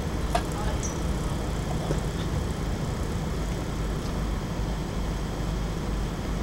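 Steady low rumble of outdoor background noise, with a short click about a third of a second in.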